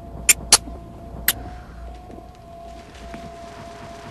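Three sharp clicks, two close together early and a third just over a second in, over a low steady drone with a faint steady tone.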